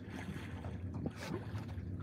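Small fishing boat on open water: a steady low hum under water noise and wind on the microphone, with a brief splash-like rush about a second in.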